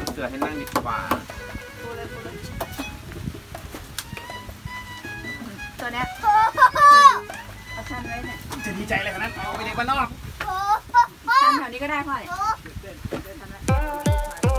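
A young child's high voice calling out and chattering in short bursts, loudest about six seconds in and again between nine and twelve seconds, with scattered light knocks; laughter near the end.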